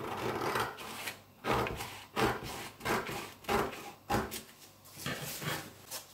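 Scissors cutting through brown paper pattern, a series of short crisp snips about one every half to three-quarters of a second.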